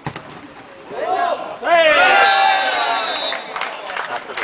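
Men shouting from the touchline at a football match: short calls about a second in, then one long, loud shout. A high, steady whistle blast sounds over the shout for about a second.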